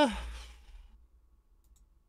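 The tail of a drawn-out hesitant "uh" from a person's voice, trailing off into a breathy exhale about half a second in, then near quiet with a faint low hum and a few tiny clicks.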